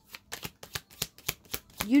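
Tarot deck being shuffled by hand: a quick run of soft card taps, about six a second.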